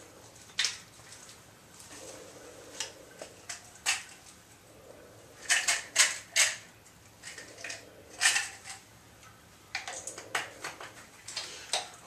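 Small plastic supplement bottle and capsules being handled: scattered light clicks and taps, with a quick cluster of them about halfway through and more near the end.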